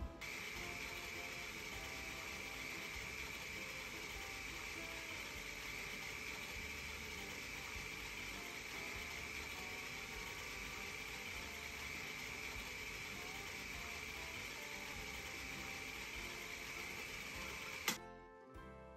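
Steady mechanical whirr of running 16mm film machinery, with a high whine running through it; it starts suddenly and stops with a click near the end.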